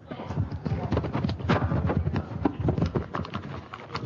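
An irregular run of knocks and clatter, several a second, with people talking in the background.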